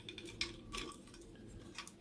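A few faint plastic clicks and scrapes as a 3D-printed fan shroud is slid and pressed into its mounting channel on a 3D printer's hotend carriage.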